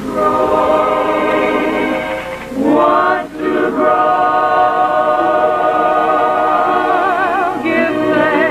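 A choir singing long held chords. About two and a half seconds in the voices sweep upward, and near the end the top notes waver with vibrato.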